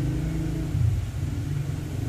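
A steady low motor hum.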